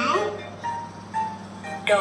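A young child says a short word, then a quiet electronic tune of a few single notes plays.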